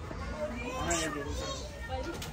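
Voices of people talking in the background, children's voices among them, over a low steady rumble.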